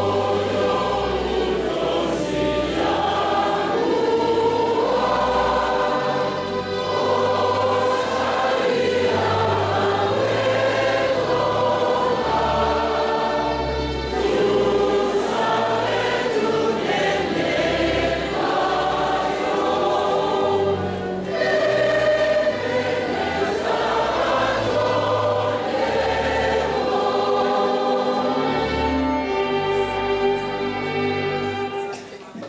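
A choir singing a hymn together, many voices on sustained, shifting notes, with a low bass pulse recurring underneath.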